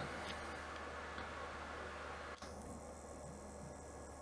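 Faint steady background hiss and low hum, with a few faint ticks near the start; the background noise changes abruptly about two and a half seconds in, as at an edit.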